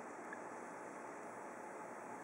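Faint steady hiss of room tone, with one very faint tick about a third of a second in.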